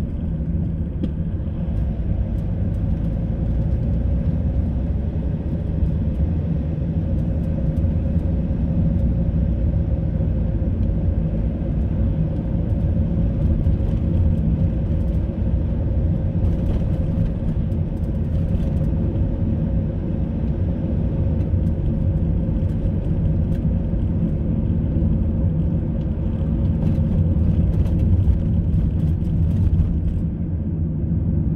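Car driving along a road, heard from inside the cabin: a steady low rumble of engine and tyre noise.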